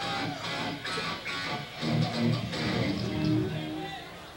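Electric guitar played live through an amplifier: chords and held notes, getting quieter near the end.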